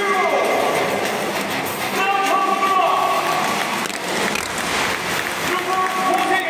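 Stadium public-address announcer calling out the starting line-up, the voice echoing and drawn out over a steady crowd din.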